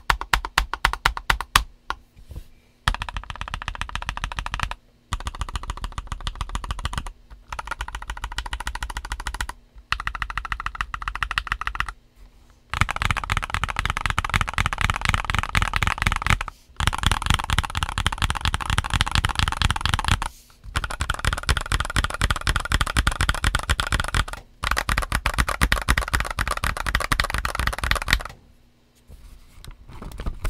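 A Mistel MD600 mechanical keyboard with Gateron Silver linear switches and OEM-profile ABS keycaps being typed on. The keystrokes come in fast, continuous runs broken by short pauses every few seconds, and are more spaced out at the very start.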